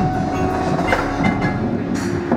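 Indoor drumline playing: quick strikes from the marching drums over held pitched notes from the front-ensemble keyboards and mallet instruments.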